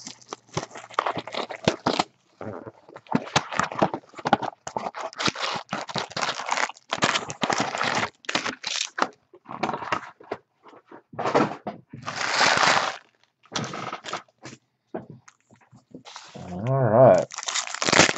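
Trading-card pack wrappers and box wrapping crinkling and tearing as hands unwrap a hobby box and handle its foil packs: irregular crackles and rustles, with a longer tearing sound about twelve seconds in.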